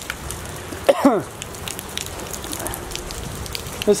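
Light rain falling: a steady hiss dotted with scattered ticks of drops.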